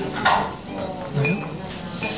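Cutlery clinking against tableware bowls during a meal, with a short sharp clatter about a quarter of a second in.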